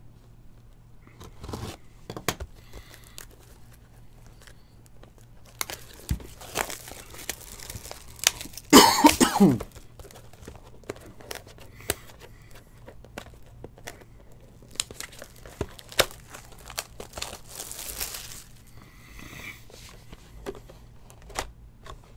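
Plastic shrink wrap on a cardboard trading-card box being slit with a box cutter and torn off: scattered crinkling, rustling and small clicks. A single cough about nine seconds in.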